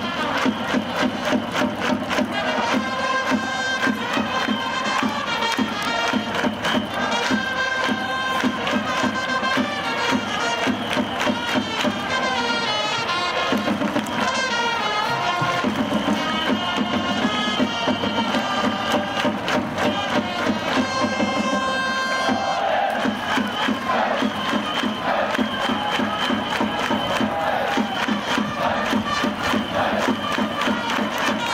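Japanese pro baseball cheering section performing a team cheer song: trumpets playing the melody over a steady drum beat while the crowd sings and chants along.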